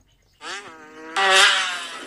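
Small petrol engine revving: a droning note that climbs a little, then turns suddenly louder and harsher just past a second in.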